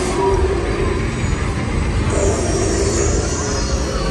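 Funfair ambience: loud music from the rides with a heavy bass, over crowd noise. About halfway through a high hiss or screech sets in and carries on to the end.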